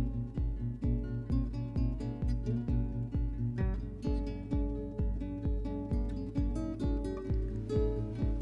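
Background music: plucked guitar notes over a steady beat of low pulses, about two a second.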